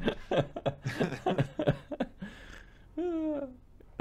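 People laughing in short bursts of chuckles.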